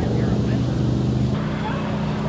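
A steady low engine hum, as from a vehicle running at idle, with faint voices over it; the hum shifts slightly a little past halfway.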